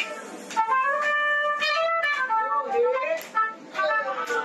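A woman singing live, holding long notes with bends in pitch, over instrumental accompaniment.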